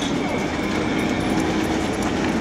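Armoured police vehicle's engine running with a steady whine.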